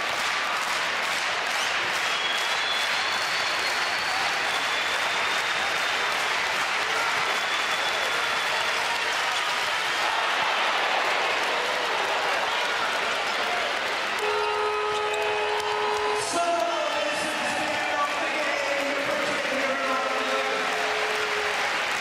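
Loud, steady crowd noise from a packed handball arena through the final seconds of a tied match. About fourteen seconds in, a steady horn sounds for about two seconds: the end-of-game signal.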